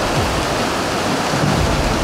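Hundreds of fish leaping from a river and falling back, a dense, steady splashing like heavy rain.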